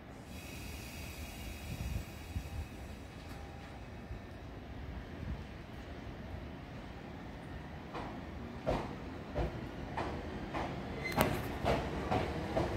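Electric train moving through a station: a steady low rumble with a faint high whine at first, then wheel clicks over the rail joints from about eight seconds in, coming faster and louder toward the end.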